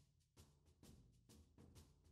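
Near silence: only very faint background music with a soft, regular drum beat.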